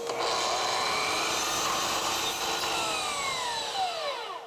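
DeWalt miter saw running and cutting through a strip of panel moulding, then winding down after the cut, its whine falling in pitch over the last second or two.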